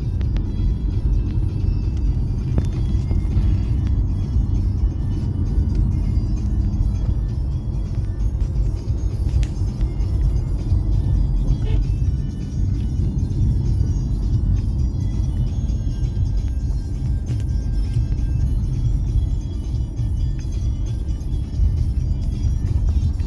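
Music playing over the steady low rumble of a car driving along a road, heard from inside the car's cabin.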